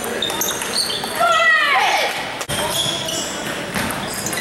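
Table tennis balls ticking off bats and tables across a gym hall full of matches, many short sharp clicks throughout. About a second in, a person's voice calls out once, falling in pitch.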